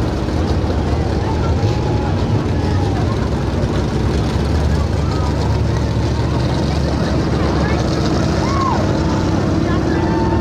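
Dirt-track stock car engines running at low speed with a steady, low rumble as the cars roll slowly around the track.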